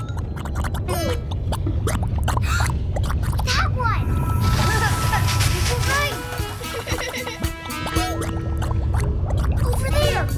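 Cartoon geyser sound effects: a quick run of pops, then a hissing gush of gas from about four to six seconds in, over background music. The popping is the sign that a geyser is about to blow.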